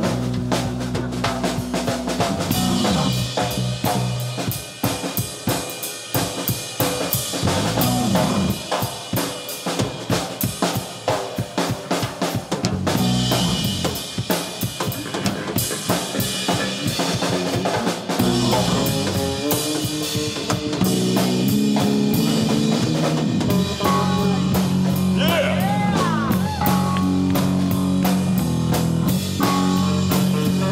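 Live rock band playing an instrumental break between verses, with drum kit, keyboard and electric guitar. For the first half the drums are to the fore with snare and bass drum hits; about halfway the band comes in fuller and steadier.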